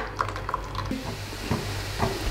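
A hand squelching and mixing wet ground coconut paste in a pot, with a few soft clicks. A faint hiss of frying comes up about halfway through.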